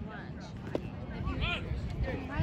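Scattered voices of people calling out around a baseball diamond, with one short knock about three quarters of a second in.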